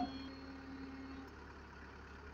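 Engine of a UNIC truck-mounted crane running steadily, with a steady whine over it that stops a little over a second in.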